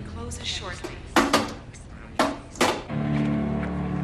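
Four sharp clicks or knocks, two close together about a second in and two more about two seconds in. About three seconds in, a steady low hum comes on.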